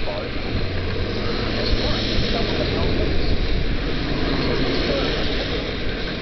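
A vehicle travelling on a rain-wet road: a steady rush of wind and tyre noise over a low engine drone.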